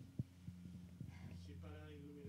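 Steady low electrical hum, with a few soft knocks, the loudest just after the start. A person's voice comes in about halfway through.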